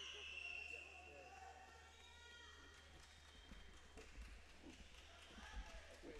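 Quiet arena ambience with faint, indistinct voices; from about halfway, a few light thuds and taps of wrestlers' feet stepping on the mat as they hand-fight.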